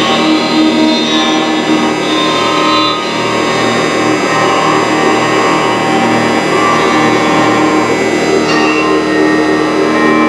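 Improvised noise music: a bowed acoustic guitar inside a dense, steady wash of many sustained electronic tones, square and sine waves that live code generates from painted colours.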